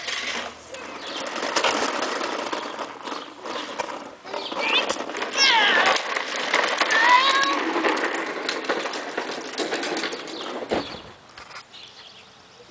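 Wheels of a Tonka toy dump truck rolling and rattling over concrete as it is pushed along, stopping about ten and a half seconds in. Several short high squeaks come through about halfway through.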